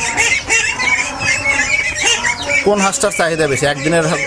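Farmyard poultry calling: many short, overlapping honks and squawks.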